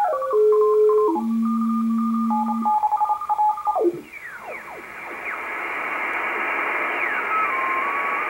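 Icom IC-R8500 shortwave receiver in upper sideband, tuned across CW signals in the 12 m amateur band. Morse carrier tones step and slide down in pitch as the dial turns, and one is keyed on and off. From about halfway, band hiss fills in, with faint tones gliding past and a steady tone near the end.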